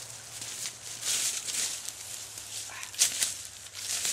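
Rustling and crunching in dry forest leaf litter and brush as a person moves and handles a wooden stick, with a sharp crack about three seconds in.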